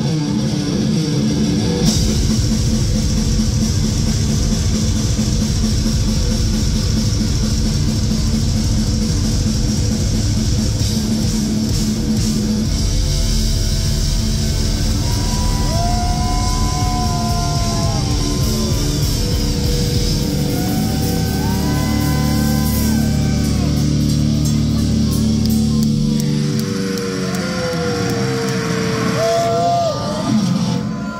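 Live heavy metal band playing loudly: distorted electric guitars over a fast drum kit, with bending lead guitar notes in the second half. Near the end the drums and low end drop out, leaving a guitar note sliding and ringing on.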